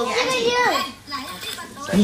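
A young child's voice: a high-pitched call whose pitch glides and then drops, lasting most of the first second, followed by quieter vocal sounds.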